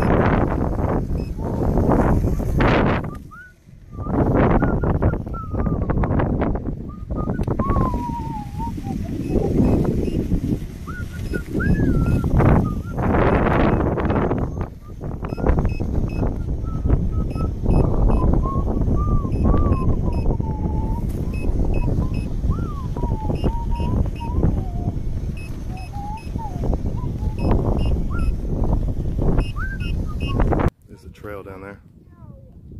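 Heavy wind rumble buffeting the microphone, with a thin, wavering whistle-like tone coming and going over it.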